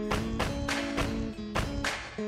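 Background music with a steady beat: held chords over a regular percussion hit about twice a second.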